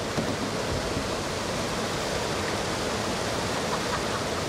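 River rapids rushing steadily as whitewater pours over a rock ledge.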